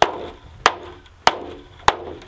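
Four even hammer blows, about 0.6 s apart, from the flat face of a claw hammer striking a clear Tuftex corrugated polycarbonate greenhouse panel. Each is a sharp whack with a short ring after it.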